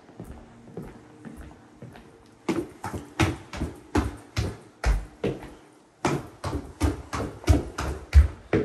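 Footsteps going down a hardwood staircase. The steps start about two and a half seconds in and come at roughly three a second.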